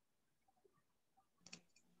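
Near silence, with two or three faint short clicks about one and a half seconds in.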